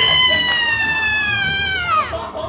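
One long, shrill, high-pitched scream, held for over two seconds and slowly sinking in pitch before it breaks off.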